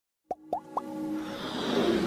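Logo intro jingle: three quick rising plops in the first second, then a swelling whoosh over held musical tones that builds toward the end.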